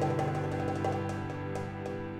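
Chamber-jazz ensemble of strings, piano and percussion playing: held string chords under a run of quick percussion taps, slowly fading.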